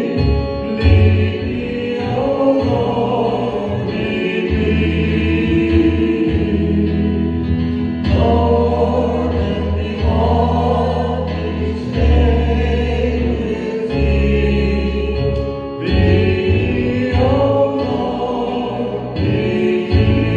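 Worship group singing a hymn in unison with instrumental accompaniment, over held low bass notes that change about every two seconds.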